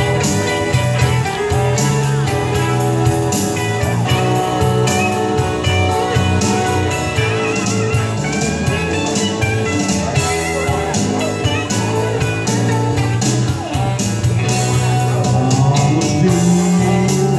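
Blues-rock karaoke backing track in an instrumental break: a band with guitar over a steady drum beat, with no singing.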